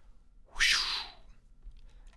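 A single short in-breath close to the microphone, lasting about half a second, about half a second in; the rest is near silence.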